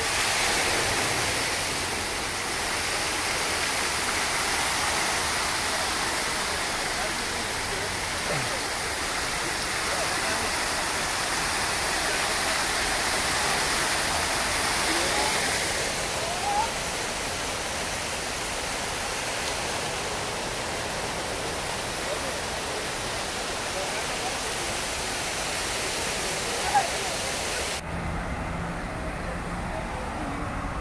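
Fountain water falling down a wall into its stone basin, a steady splashing rush. Near the end it cuts to quieter street traffic.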